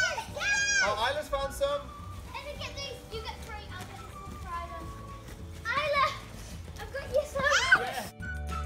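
Young children's excited high-pitched calls and squeals, in short bursts near the start, about six seconds in and again near the end.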